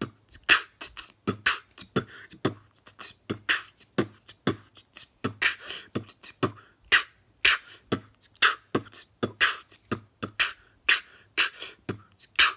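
Solo human beatboxing: a steady groove of quick mouth-made kick, snare and hi-hat sounds, about three to four strokes a second, some with hissy snare tails.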